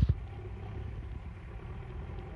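JCB backhoe loader's diesel engine running as it pushes snow, heard from a distance as a low steady rumble. A single knock comes right at the start.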